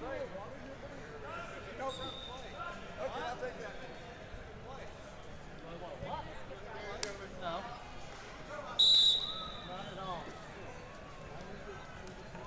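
A referee's whistle blown once, a short high-pitched blast about nine seconds in, to start the wrestling bout. Under it, many people chatter in a large hall.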